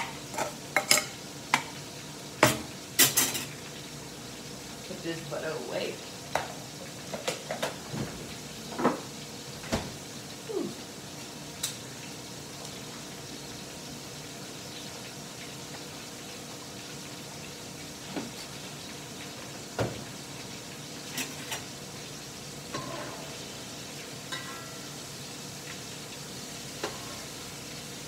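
Food sizzling steadily in a hot frying pan, with a metal utensil clinking and scraping against the pan many times in the first dozen seconds, then only now and then.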